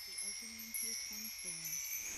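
Quiet chime-like background music: a run of five or six short, low pitched notes, one after another, over a faint high ringing.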